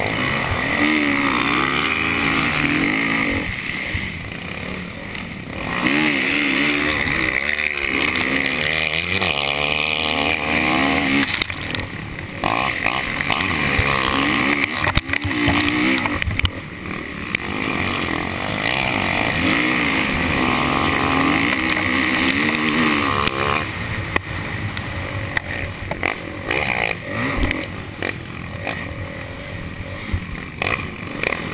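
Motocross bike's engine under hard riding, revving up and falling back over and over as the throttle is worked and gears change through the corners.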